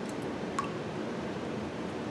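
A playing card being pressed down into a ceramic bowl of water: faint handling sounds over steady room noise, with one light tick about half a second in.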